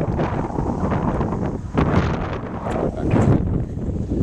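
Wind blowing across the camera microphone: an uneven low rumble that gusts louder and softer.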